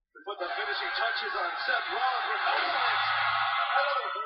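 Wrestling TV broadcast audio: a man's voice over steady arena crowd noise. It starts about a quarter second in after a brief gap.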